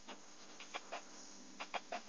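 Faint computer-mouse clicks: one tick at the start, then two quick runs of about three ticks each, a second apart.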